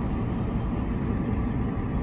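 Steady road noise inside the cabin of a moving car: a low rumble of tyres on the road and engine under way at road speed.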